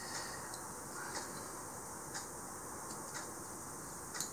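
Quiet room hiss with a faint tick about once a second, evenly spaced.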